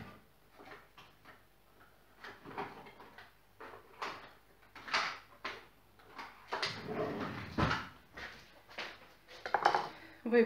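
Kitchen drawer and utensils clattering off to the side, with scattered knocks and rattles as a small spatula is fetched, the loudest about seven seconds in.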